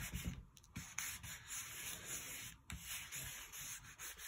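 The back of a wooden spoon is rubbed and pressed over folded paper, squishing flowers and plants between the sheets to transfer their colour. It makes faint, irregular scraping strokes of wood on paper.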